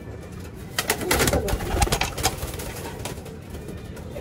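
Domestic pigeon's wings clattering in a quick flurry of beats, starting about a second in and lasting about a second and a half, as it takes off from a hand. Pigeons coo faintly in the loft.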